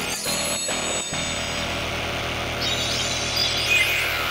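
Acid techno track: dense electronic music with steady synthesizer tones. Short gaps cut through it about twice a second in the first second, and a rising sweep comes in near the end.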